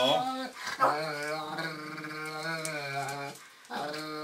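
A Weimaraner's drawn-out grumbling growl: a short one at the start, then one long, steady one from about a second in that cuts off shortly before the end.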